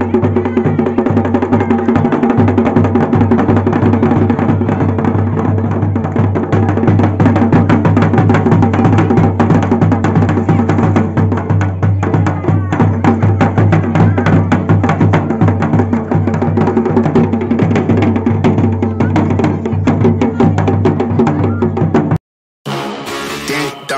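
Folk dhol drumming, a two-headed barrel drum beaten with a stick in a fast, unbroken rhythm over a steady low drone.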